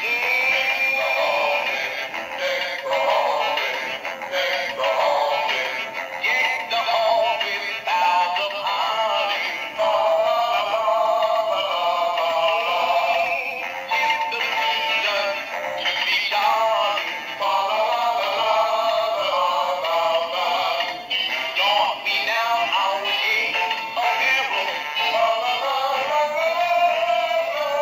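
Animated dancing plush Christmas toys, a snowman and a tinsel Christmas tree, playing a sung song through their small built-in speakers. The sound is thin and tinny, with no bass.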